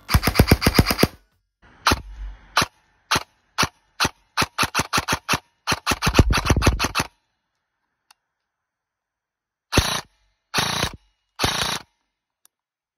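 Custom airsoft electric rifle with a 30k motor, 13:1 gears and an M120 spring firing: a fast full-auto burst, then single shots in quicker and quicker succession running into another burst. After a pause of about two seconds, three short bursts near the end.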